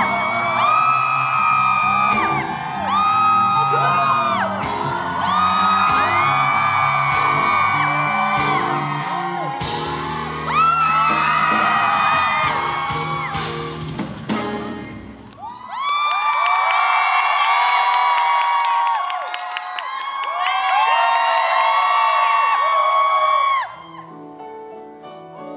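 Live pop-rock band playing, with drum kit, bass and singing. About fifteen seconds in the drums and bass drop out, leaving only voices singing long held notes until the sound cuts off just before the end.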